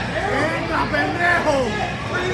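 Crowd chatter: several spectators' voices talking and calling out over one another, with no single clear speaker.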